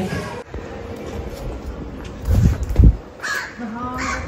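A crow caws once, about three seconds in. Just before it comes a low rumble of wind or handling on the microphone, which is the loudest sound here.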